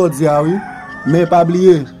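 A man's voice speaking in long, drawn-out phrases.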